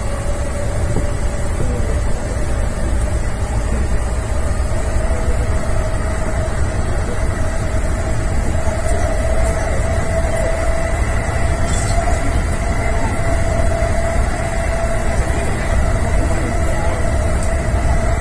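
E233 series 5000 electric commuter train running, heard from the driver's cab: a steady low rumble of the wheels on the rails with a whine that rises slowly in pitch as the train gathers speed.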